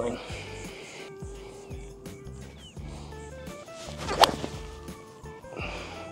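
A six iron striking a golf ball off turf once, a single sharp crack about four seconds in, over soft background music.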